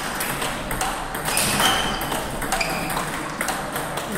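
Table tennis balls clicking sharply and irregularly against tables and bats in the hall, with a few short high-pitched squeaks partway through.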